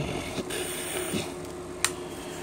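Handling noise from a nylon load-bearing vest and its magazine pouch: light rustling, with one sharp click near the end.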